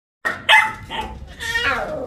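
A puppy barking: a few short yaps, then a longer call that falls in pitch near the end.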